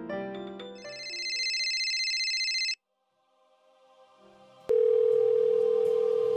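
Piano music dies away, then a high steady electronic tone holds for about two seconds and cuts off suddenly. After a second of silence, a steady low telephone tone like a dial tone starts about two-thirds of the way through.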